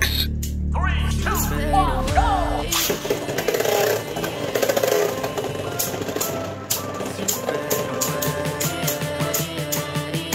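Pop-song backing music throughout, with a voice in the first couple of seconds. From about three seconds in, a busy run of clicks and rattles joins the music: two Beyblade Burst tops spinning and knocking together in a plastic stadium.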